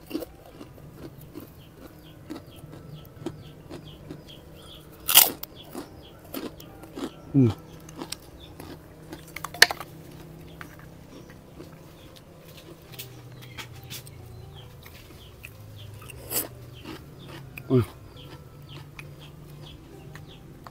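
Close-miked chewing, with a few loud, sharp crunches of a kerupuk cracker spread among quieter mouth sounds.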